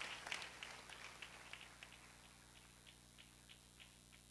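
Faint congregational applause dying away into a few scattered claps, over a steady low hum.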